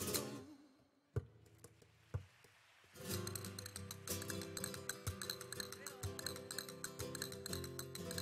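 Flamenco guitar between sung verses of a sevillana: the voice dies away in the first second, there is a near-quiet gap with two sharp taps, and the guitar starts playing again about three seconds in.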